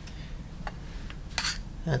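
A few faint light clicks and one short scrape as thin Ablam shell-laminate sheets are handled and shifted against each other, over a low steady room hum.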